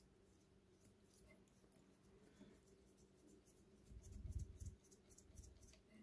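Near silence with faint, scratchy ticks of fly-tying thread being wound onto a hook shank, and a soft low bump about four seconds in.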